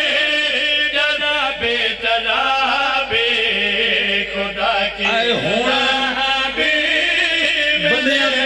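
Men chanting a melodic devotional recitation into microphones over a public-address system, the sung voice running on without a break.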